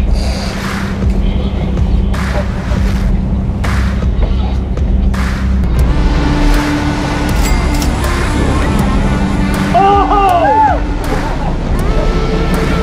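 Steady low rumble of a sportfishing boat's engines, mixed with background music, with a raised voice shouting about ten seconds in.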